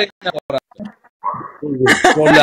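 Voices of people on a live video chat, broken into short bits, with a brief noisy sound a little past the middle before talking resumes.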